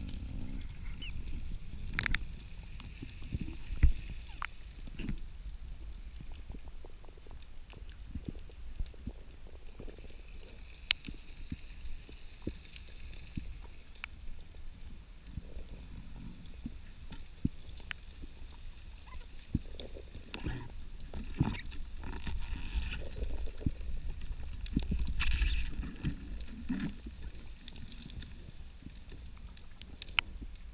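Underwater sound through a camera's waterproof housing: a steady low rumble of moving water with scattered small clicks and knocks. A sharper knock comes about four seconds in, and there is a louder stretch of rumble near the end.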